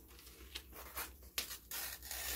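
Paper rustling and rubbing as a spiral-bound sketchbook page is handled, with a few sharp crackles, growing louder near the end.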